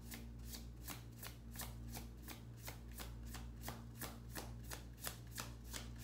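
A tarot deck being shuffled by hand: a steady run of quick, crisp card slaps, about five a second, with a low steady hum underneath.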